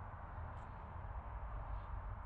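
Quiet background noise: a steady low rumble with a faint hiss, and no distinct sound standing out.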